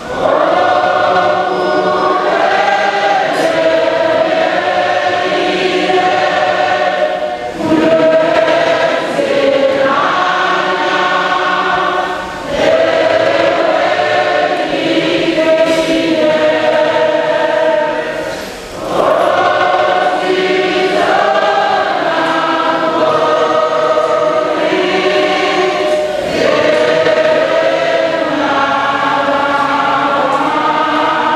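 A church choir singing a hymn in long, held phrases, pausing briefly between lines every few seconds.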